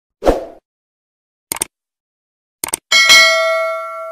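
Subscribe-button animation sound effects: a short low pop, two quick double mouse clicks, then a notification bell ding about three seconds in that rings out.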